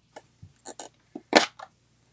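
Light plastic clicks and taps from a Stampin' Pad ink pad case being handled and its lid opened, with one sharper click about one and a half seconds in.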